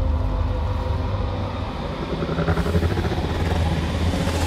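Deep, steady rumble from a film trailer's sound design, with faint held low tones that swell about halfway through.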